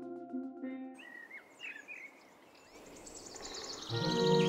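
A held chord of background music fades out in the first second, leaving faint outdoor birdsong: scattered chirps, then a rapid high trill that grows louder near the end.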